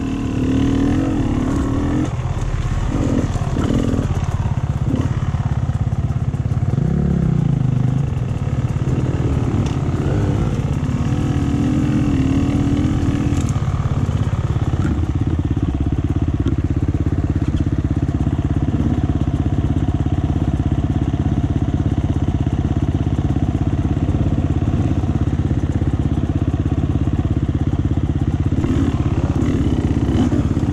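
Off-road motorcycle engines running at low revs, with a short throttle blip about seven seconds in. They settle into a steady idle for the second half.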